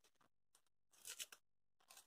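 Near silence with a few faint paper crinkles: the paper backing being picked at and peeled from the back of a fabric appliqué piece, with a small cluster of crinkles about a second in.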